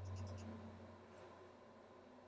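A few quick computer mouse clicks in the first half second, a double-click on an on-screen shape, over a low hum that fades out. Then faint room tone.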